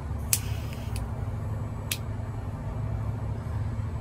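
A lighter being flicked three times, the first strike followed by a brief hiss, as it is held over a small metal pipe. A steady low rumble runs underneath.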